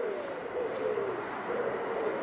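Birds calling: a low cooing call that falls in pitch, then a small songbird's quick run of high chirps stepping down in pitch in the second half.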